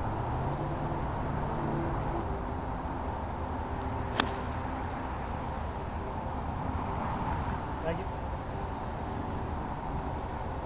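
A golf club striking a ball off the tee once, a single sharp crack about four seconds in, over steady outdoor background noise.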